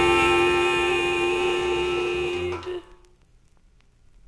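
A held chord from a 45 rpm vinyl record, steady, then cutting off a little under three seconds in. After it the record's quiet groove runs on with faint surface crackle and a few clicks.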